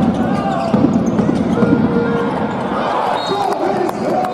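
Handball bouncing with sharp knocks on a hard sports-hall floor during play, over steady crowd chatter and voices in the arena.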